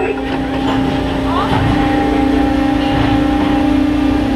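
Machinery of a robotic injection-molding cell running: a steady hum of several held tones, the main one stepping slightly up in pitch about one and a half seconds in as the robot arm moves.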